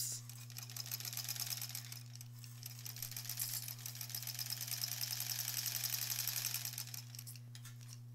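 Sewing machine stitching through quilt fabric in one continuous run of rapid needle strokes. It gets louder in the middle and stops about seven seconds in.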